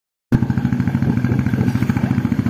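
Royal Enfield Classic 350's single-cylinder engine running while the bike is ridden, a steady, evenly pulsing exhaust beat that starts abruptly a moment in.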